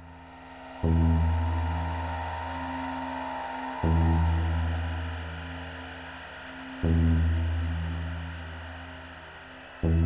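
Ambient electronic music on software synthesizers: a deep, gong-like bass note is struck about every three seconds, four times, each swelling in and slowly fading under a held pad.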